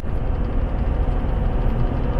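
Steady road noise heard inside a vehicle's cab at highway speed: tyre, engine and wind noise at a constant level.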